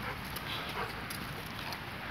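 A Doberman wearing a dog backpack spinning and moving about on dry dirt and leaves, with small dog sounds and scattered scuffs and clicks.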